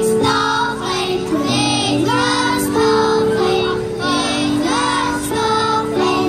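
A group of young children singing together through a PA, over an instrumental accompaniment that holds long steady notes.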